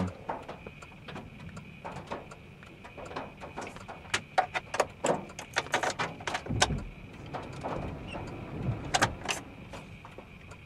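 Scattered sharp ticks of raindrops hitting the car's windshield and roof, growing more frequent about halfway through, over a faint steady high tone inside the car. A brief low rumble comes about six and a half seconds in.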